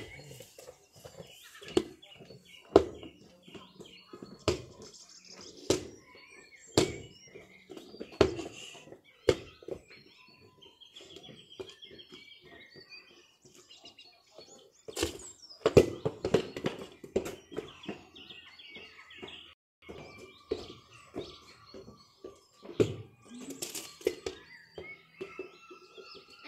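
A football being kicked up and bouncing, a thud about once a second for the first nine seconds, then scattered thuds later on. Birds chirp faintly in the background.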